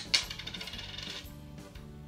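A penny dropping onto a hard tabletop, striking sharply and then ringing and rattling for about a second as it settles.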